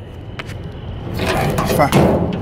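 Steel rear swing door of a semi-trailer being forced open: a rattling scrape of the door and latch hardware builds about a second in and ends in a metal clank. The door is stiff and sticking.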